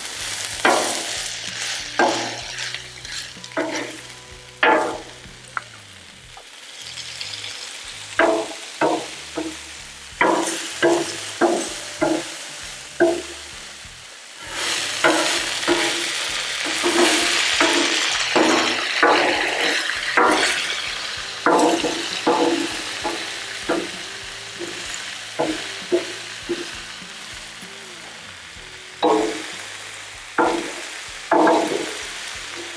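Chicken and vegetables sizzling on a Blackstone steel flat-top griddle, the peppers and onions steaming from water just poured on them; the hiss swells loudest about halfway through. Over it, a metal spatula repeatedly knocks and scrapes on the steel cooktop.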